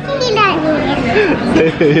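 Speech only: a young girl talking excitedly, with other voices talking along with her.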